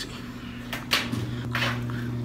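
A few short taps and scrapes from handling tableware at a table, over a steady low hum.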